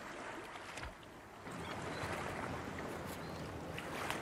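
Faint, steady noise of a fishing boat out on the water, growing a little louder about a second and a half in.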